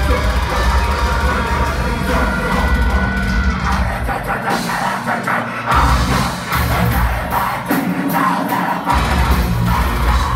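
Technical deathcore band playing live, heard from within the audience: distorted guitars, bass and drums with vocals. The heavy bass and kick drum drop out twice for a second or two while the guitars carry on.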